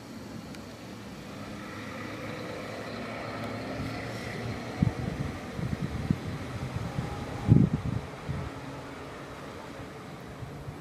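JCB tracked excavator's diesel engine running close by, a steady hum that grows a little louder a couple of seconds in. A cluster of low thumps comes in the second half, the strongest about seven and a half seconds in.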